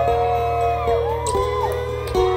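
Live music played loud through a concert PA: long held melodic notes that slide up and down in pitch over a steady low bass drone.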